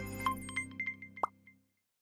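Logo-intro jingle ending: a held electronic chord with short plinking pops fades out, with a quick rising pop about a second in, and the sound stops about a second and a half in.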